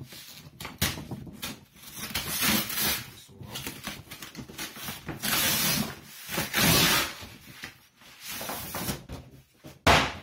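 Brown paper and cardboard outer packaging being torn and pulled away, in repeated bursts of ripping and rustling, with a sharp knock near the end, the loudest sound.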